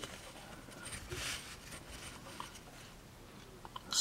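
Faint rustling and scraping as an architect's scale ruler is laid and slid into place against a pocket knife on a fabric mat, with a few light ticks near the end.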